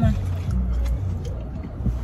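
Low, steady rumble inside a car's cabin during a pause in the conversation.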